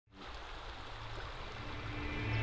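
Creek water flowing: a steady rushing noise that starts just after the beginning and holds even.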